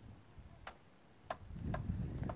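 Faint, sharp ticks from wooden boardwalk planks underfoot, about half a second apart. A low rumble from steps or handling comes in during the second half.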